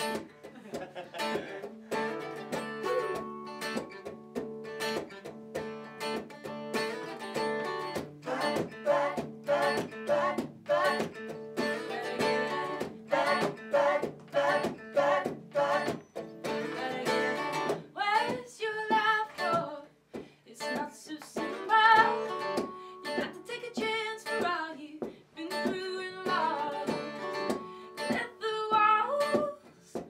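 Two acoustic guitars strumming the intro of an acoustic rock song, with a woman's lead vocal coming in a little past halfway.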